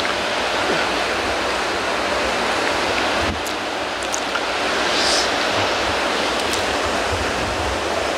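Steady rushing, water-like noise with a low uneven rumble beneath it and a few faint high chirps near the middle.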